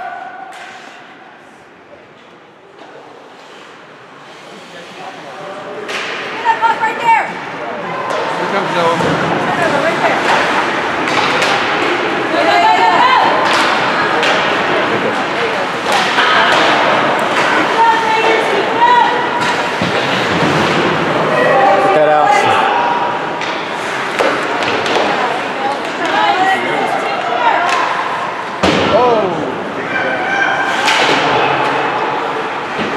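Ice hockey game sounds in a large rink hall: sharp clacks and thumps of sticks, puck and players hitting the boards, under many spectators' overlapping indistinct shouts. Quieter for the first few seconds, the voices and impacts build up about six seconds in and stay loud.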